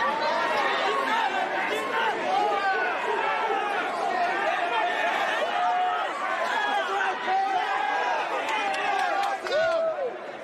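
Wrestling crowd at ringside, many overlapping voices shouting and chattering close to the microphone.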